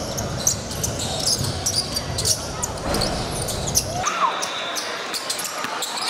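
A basketball being dribbled hard on a hardwood gym floor, a quick run of sharp repeated bounces. Background voices of people in the gym carry on underneath, and the background changes abruptly about two-thirds of the way through.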